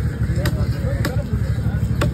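Cleaver chopping through red snapper onto a wooden log chopping block: two sharp knocks a little over half a second apart, over a steady low rumble.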